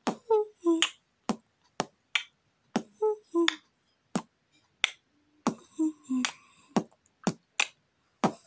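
A boy beatboxing with his mouth: sharp clicks and short hollow pitched pops in a loose, unhurried rhythm, roughly two or three a second with short silences between.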